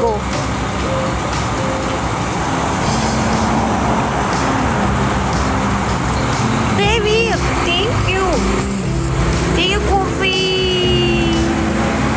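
Street traffic noise, a vehicle passing in the first half, over background music with a stepping low bass line; a voice comes in briefly in the second half.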